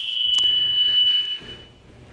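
A single steady high-pitched tone, like a whistle or beep, that fades out near the end.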